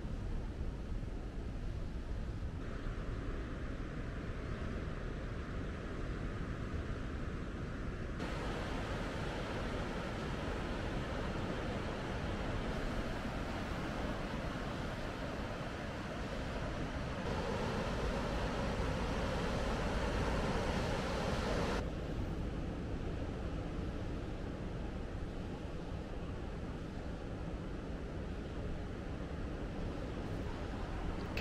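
Steady outdoor rushing noise of wind and distant surf breaking on the rocks below, its tone shifting abruptly several times.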